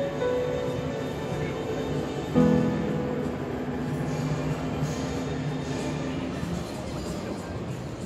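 Upright piano played solo: a chord struck about two and a half seconds in rings and slowly fades, with softer notes over it.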